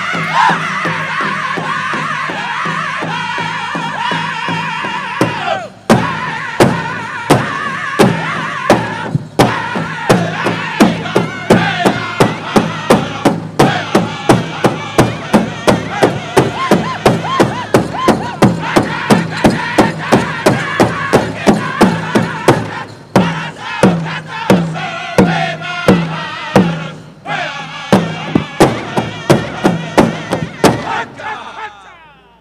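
Pow wow drum group song: a high sung lead, then from about six seconds in a big drum joins with a steady fast beat under the group singing, with two short breaks in the drumming near the end.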